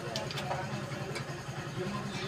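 An engine idling steadily with a low hum, with a few light metallic clicks from hand work under a truck's chassis, twice near the start and once about a second in.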